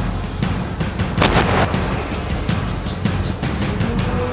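A single sharp firing report about a second in: the 90 mm turret gun launching a Falarick 90 guided missile, heard over background music.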